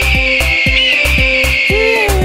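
An eagle's screech, one long high cry with a small upward flick about a second in, fading near the end, over background music with a steady drum beat.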